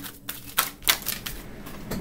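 Tarot cards being shuffled by hand: a handful of sharp snaps in the first second, then softer clicking.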